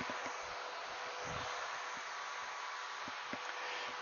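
Quiet room tone: a steady hiss with a faint steady hum, and a few soft faint taps.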